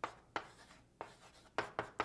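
Handwriting: about six short, separate writing strokes, unevenly spaced, as an algebra step is written out.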